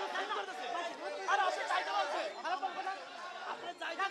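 Several people arguing at once, their voices overlapping into crowd chatter.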